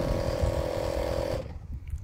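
Small air compressor running steadily, charging the rocket's air cannon, then cutting off about one and a half seconds in; a low wind rumble on the microphone runs underneath.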